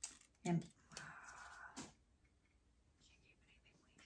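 A short spoken word, then a breathy whisper that ends in a click, then near silence.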